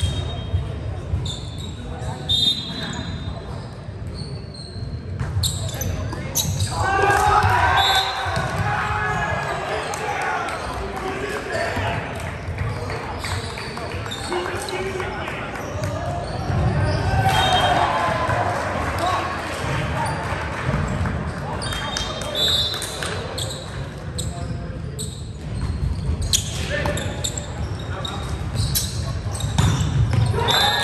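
Volleyball play in a large gymnasium: the ball is struck and bounces on the hardwood floor, sneakers squeak briefly, and players' voices call out in the echoing hall, loudest in two stretches of a few seconds each.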